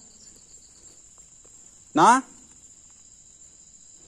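A steady, high-pitched chorus of crickets. About two seconds in, a man's voice breaks in with one short rising call.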